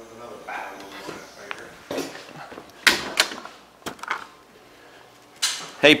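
A handful of sharp knocks and clunks on hard surfaces, the loudest about three seconds in, then a man calls out "hey" near the end.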